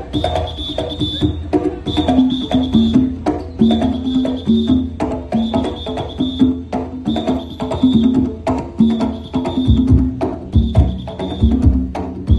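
Conch shell horns play a melody and chords in short held notes over hand drums and steady knocking percussion. Deep bass drum beats come in near the end.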